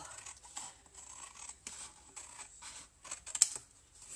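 Metal scissors snipping through cardstock in a series of short cuts, trimming small pieces off the box flaps, with one sharper click a little past three seconds in.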